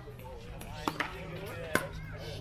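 Pickleball being played at the net: hard paddles striking the plastic ball, with sharp, hollow pocks about a second in and again near the end.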